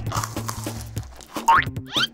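Background music with a cartoon sound effect in the second half: a quick, loud rising pitch glide like a boing.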